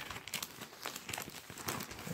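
Plastic comic-book sleeve and torn paper packaging crinkling as they are handled: a faint run of small, irregular rustles and clicks.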